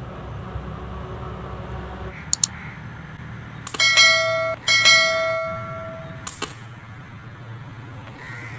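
Two loud ringing bell-like chime tones, the first just under a second, the second about a second and a half, with a few sharp clicks before and after them.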